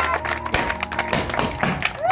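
A crowd of adults and children clapping hands, with music playing underneath.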